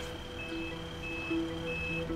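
Electronic warning beeper sounding a short, high beep about every two-thirds of a second, like a reversing alarm, over soft background music.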